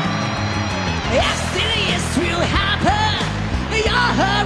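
Live band playing a rock song, with a steady backing and short vocal phrases over it.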